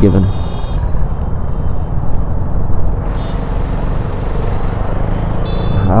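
KTM Duke 390 single-cylinder engine running steadily while riding in traffic, with wind and road noise. A few short high-pitched beeps come through at the start, about halfway and near the end.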